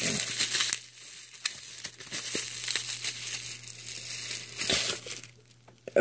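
Packaging around a coin being unwrapped by hand: crinkling and rustling in irregular bursts with small clicks, fading out near the end.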